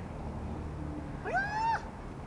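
A small pet animal gives one short, high cry about one and a half seconds in: it rises quickly, then holds its pitch before breaking off. Faint steady background hum throughout.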